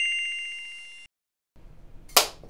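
A bright bell-like ring sound effect with two clear tones and a fast trill. It fades over about a second, then cuts off abruptly.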